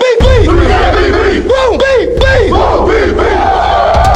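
A team of football players shouting in unison, the call-and-response close of their pregame prayer, several shouted phrases in a row over a hip-hop beat with deep bass.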